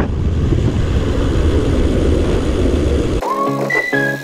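Loud, low wind rumble on a handlebar-mounted camera's microphone while a bicycle is ridden along a path. It cuts off suddenly about three seconds in, and music with a whistled tune takes over.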